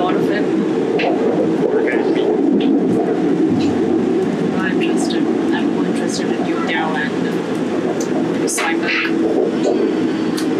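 Steady running rumble and hum of an airport metro express train heard from inside the passenger carriage.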